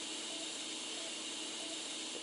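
Steady, even hiss of background noise with a faint low hum, no distinct events.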